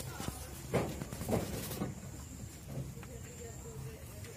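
A woven plastic sack rustling and crinkling in short bursts in the first half as it is worked around a wasp nest under a roof gutter, with faint voices.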